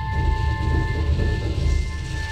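Live electronic breakbeat track: pulsing deep synth bass under several held high drone tones, one of which drops out about halfway.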